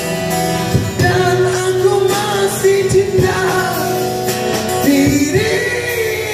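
A man singing into a microphone while strumming an acoustic guitar, holding long sung notes over a steady strummed rhythm.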